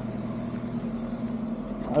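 Diesel truck engine idling with a steady, even hum.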